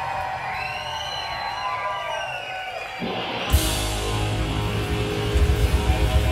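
Live rock band: an electric guitar plays a lead line of bending, gliding notes with little beneath it, then the bass comes in about three seconds in and the drums and full band enter with a hit half a second later.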